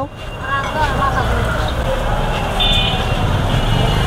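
Busy street traffic: a steady low rumble of passing vehicles, with faint voices and a brief high-pitched tone a little after two and a half seconds in.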